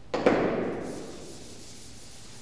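A chalkboard duster wiped hard across the board, erasing chalk. There is a knock as it strikes about a tenth of a second in, then a rough rubbing sound that fades out over most of a second.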